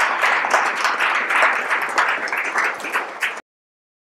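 Audience applauding, many hands clapping together; the applause cuts off abruptly about three and a half seconds in.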